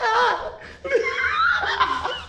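A man and a woman laughing.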